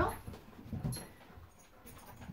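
German Shepherds whimpering faintly, just after the end of a woman's voice.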